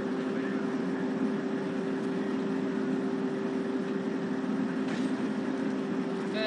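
A steady mechanical hum: two constant low tones over an even rushing noise, unchanging throughout.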